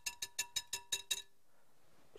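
Wire balloon whisk beating whipped cream by hand in a glass bowl, its wires clinking against the glass about six times a second with a faint ringing tone. The clinking stops just over a second in.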